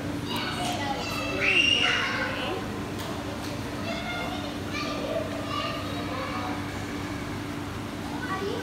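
High-pitched voices chattering and calling out, with a high call that rises and then falls about a second and a half in as the loudest moment. A steady low hum runs underneath.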